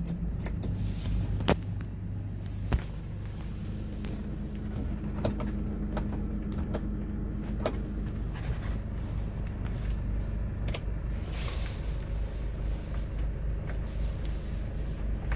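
Hyundai Porter's 2.5-litre four-cylinder diesel running steadily at idle, heard from inside the cab, with sharp clicks of dashboard switches being pressed. The two loudest clicks come about one and a half and three seconds in, and lighter ones follow later.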